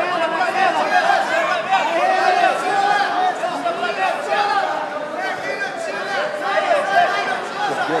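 Many voices talking and shouting over one another: a crowd of spectators calling out, with no single voice clear.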